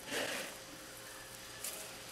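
Hands kneading soft, sticky pão de queijo dough in a plastic bowl: faint squishing, with one brief louder squelch just after the start.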